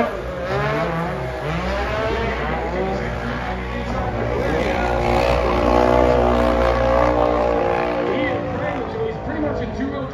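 Several UTV engines running and revving, with a steady engine drone through the middle that drops away about three-quarters of the way through.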